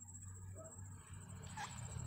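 Quiet room tone in a pause between spoken lines: a steady low hum with a faint high whine, and a couple of faint brief sounds.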